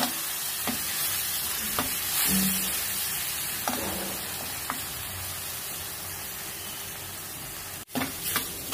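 Onion and green-chilli paste (ulli karam) sizzling steadily as it fries in oil in an earthen pot. A steel spoon stirs it, with a few light scrapes and taps against the pot.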